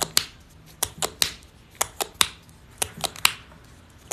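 Fingernails tapping on a phone's touchscreen: a string of about ten sharp, irregular clicks, some in quick pairs.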